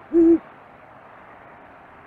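Great horned owl giving one low hoot in the first half second, the last note of its hooting series.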